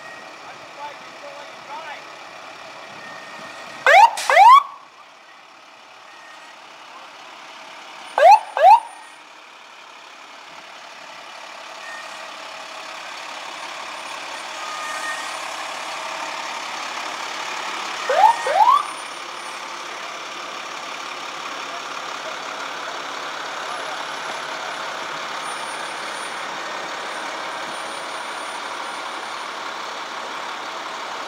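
Emergency vehicle sirens giving short whoops, each a pair of quick rising sweeps, three times: about four seconds in, about eight seconds in, and past the middle. Between them runs a steady truck-engine drone that grows louder as a rescue truck drives close past.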